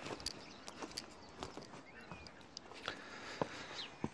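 Faint footsteps on a wood-chip path, heard as scattered, irregular light crackles and ticks.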